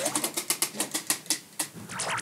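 Spinning prize wheel with its pointer ticking against the pegs: a rapid run of clicks that slows as the wheel loses speed.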